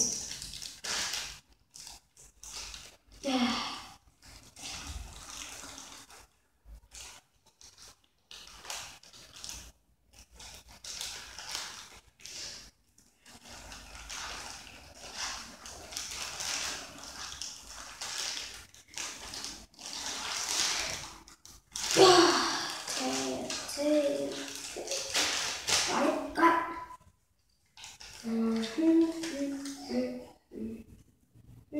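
Plastic or foil toy packaging crinkling and rustling as it is handled and torn open by hand, in irregular bursts that are loudest about two thirds of the way through.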